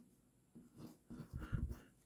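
Steel dip-pen nib scratching faintly on paper in a series of short strokes as a word is written, a little louder near the end.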